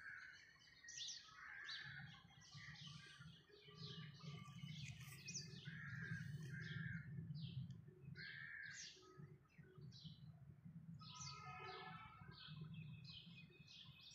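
Faint chorus of small birds chirping and calling, many short high notes and trills overlapping throughout, over a steady low hum.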